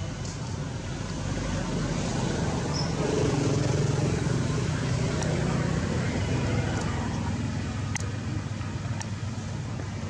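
Steady low rumbling background noise that grows louder for a few seconds in the middle, then eases off, with a few faint ticks near the end.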